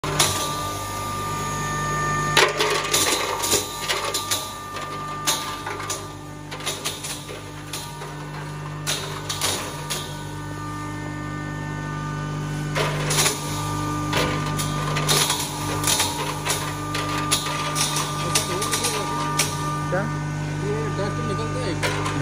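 A 5 hp single-phase double-chamber turmeric (haldi) grinder running with a steady motor hum, with irregular crackling and clattering as dried turmeric roots are fed in and crushed in the grinding chamber.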